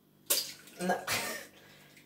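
An egg cracked over a stainless steel mixing bowl: a sharp crack about a third of a second in, then the wet slop of the egg falling into the bowl around a second in.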